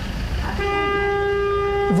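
A single steady horn note, one flat unwavering pitch held for about a second and a half.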